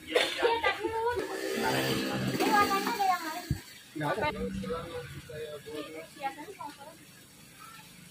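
Speech only: people talking, a woman's voice the loudest, growing quieter in the last second or two.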